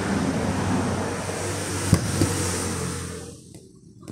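A motor vehicle's rushing noise with a low hum, fading away near the end; a single click about two seconds in.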